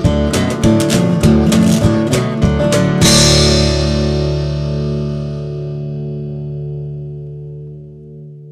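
Ending of a country-blues song: a few more sharp rhythmic hits from the band, then a final guitar chord about three seconds in that rings out and fades away slowly.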